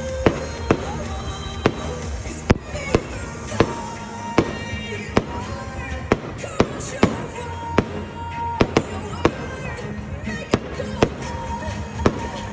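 Aerial fireworks shells bursting overhead in an irregular string of sharp bangs, about one to two a second, over music playing throughout.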